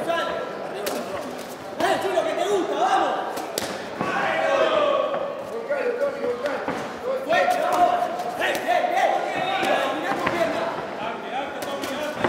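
Shouting voices from ringside throughout a kickboxing exchange, broken by several sharp smacks of gloved punches and kicks landing, in a large hall.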